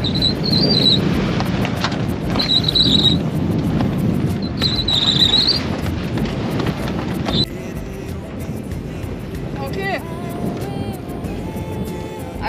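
Fabric rustling and buffeting as a canvas mainsail cover is pulled over the boom, with three short high squeaks about two seconds apart. The rustling stops suddenly about seven seconds in, leaving a quieter stretch with faint tones.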